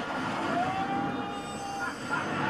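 Animated film trailer soundtrack played through a TV: a dense rumbling rush of action noise, with one high tone held from about half a second in until near the end.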